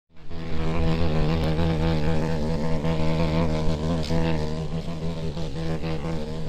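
May bug (cockchafer) buzzing with its wings in flight: a loud, steady low drone whose pitch wavers slightly, starting abruptly just after the beginning.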